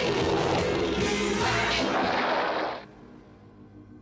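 Cartoon soundtrack: a loud, noisy rumbling blast mixed with music that cuts off sharply just under three seconds in, leaving a much quieter background.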